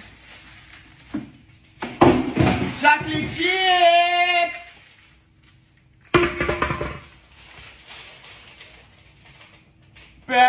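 Dry cereal poured onto a cake with a soft rattling hiss, then loud rustling under a man's drawn-out wordless 'ahh' from about two to four and a half seconds in. About six seconds in comes a sudden smash into the cake, tailing off into softer crumbling noise.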